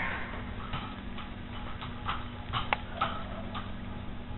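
A boxer dog's claws and paws tapping on the hall floor as she runs in and sits: light clicks at uneven spacing, the sharpest about two and a half seconds in, over a steady low hum.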